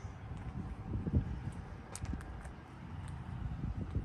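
Wind on the microphone: an uneven low rumble with a few faint ticks.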